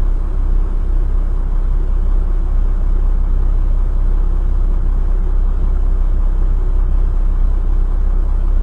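Steady low rumble of a stopped vehicle's engine idling, heard from inside the cab.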